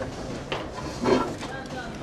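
Indistinct background voices with a few light clicks, about three in two seconds.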